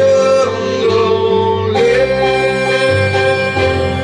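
Small live band playing an instrumental passage between verses: held melody notes that change every second or two over sustained keyboard chords, with no singing.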